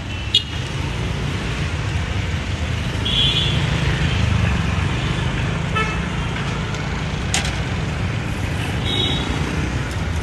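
Steady road-traffic rumble with short, high vehicle-horn toots about three and nine seconds in. Two sharp knocks, one near the start and one about seven seconds in, from a curved knife chopping a tender coconut.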